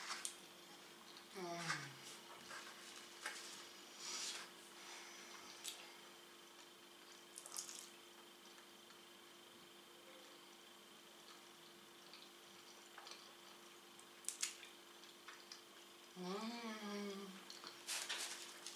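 Quiet eating sounds of a person chewing pizza: scattered soft mouth clicks and smacks over a faint steady hum. Near the end comes a short hummed voice sound.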